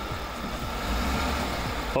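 A vehicle engine idling with a steady low hum: the vehicle holding the tow strap that is being used to jerk the bent apron straight.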